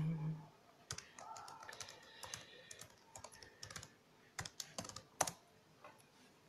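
Typing on a computer keyboard: faint, irregular key clicks.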